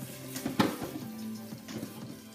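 Background music with steady tones, over a few sharp clicks from a pan of popcorn kernels being stirred on the hob, the loudest about half a second in.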